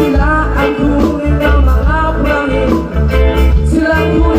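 Live band music: a male singer over electric guitars and a drum kit, with a steady beat and heavy bass.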